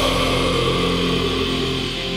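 A melodic death-thrash metal band's last held chord ringing out and slowly fading at the end of a song, with no drums.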